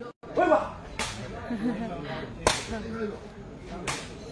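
A sepak takraw ball being kicked during a rally: three sharp cracks, about a second and a half apart, the middle one the loudest. A voice calls out briefly about half a second in.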